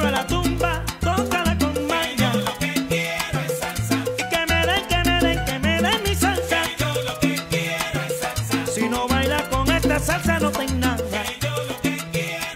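Salsa song with Spanish-language lyrics. A sung phrase ends at the very start, then the band plays on over a repeating bass line and busy percussion.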